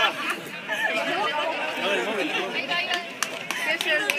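Several voices talking over one another, the chatter of players and onlookers during a small-sided football match, with a few short sharp knocks near the end.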